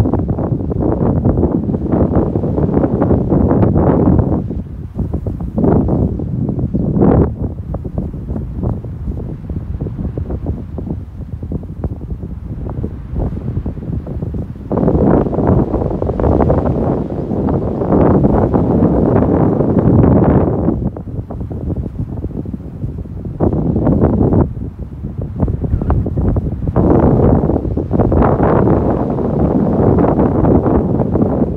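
Wind buffeting the microphone in loud gusts a few seconds long, with quieter stretches between.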